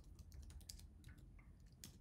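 Faint keystrokes on a computer keyboard, a quick run of clicks typing a short terminal command, with a couple of louder taps near the end.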